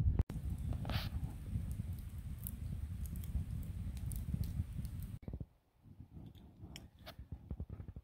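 Wood campfire burning, with a steady low rumble and many small crackles and pops. About five seconds in it cuts off, leaving only faint scattered clicks and rustles.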